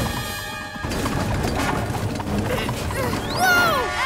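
Cartoon action score with a dense layer of sound effects and a steady low rumble. Near the end there is a short high glide in pitch that rises and then falls.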